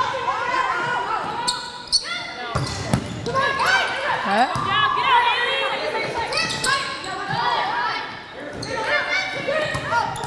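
Volleyball players calling and shouting to each other during a fast rally, with sharp smacks of the ball being passed, set and hit, echoing in a large gym.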